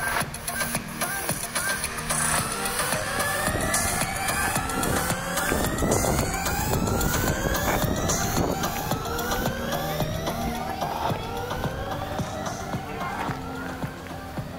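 Electronic music of a light-art installation: a synthesized tone sweeping upward over and over, roughly every second and a half, over low steady tones and scattered clicks.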